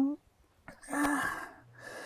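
A woman crying: after a short silence, one breathy, gasping sob, followed by a softer breath.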